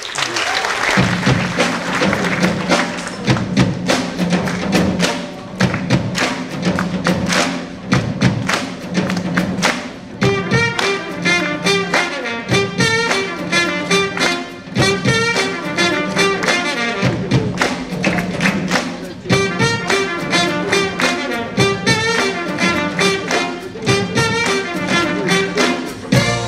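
Jazz big band playing a brisk drum-kit groove over a steady bass line. The horn section comes in about ten seconds in with short repeated riffs.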